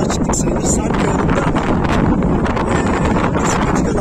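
Wind buffeting the microphone: a loud, steady low rumble and rush.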